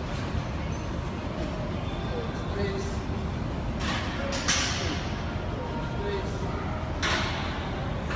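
Gym room noise with a steady low rumble and indistinct voices. There are short hissing bursts about four seconds in, again from four and a half to five seconds, and once more near seven seconds.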